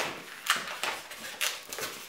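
Inflated 260 latex modelling balloon being twisted and handled, giving a run of short, sharp rubbing creaks as the latex rubs against itself and the fingers, about six in two seconds.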